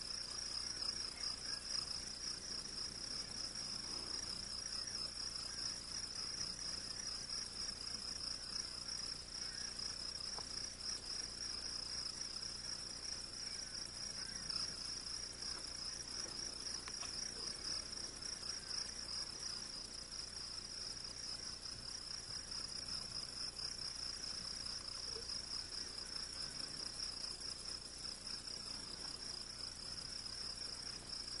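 Crickets chirping in a steady chorus, a continuous finely pulsing high trill.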